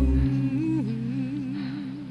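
Background music ending: the beat and bass stop just after the start, leaving a single held note with a wavering vibrato that fades out.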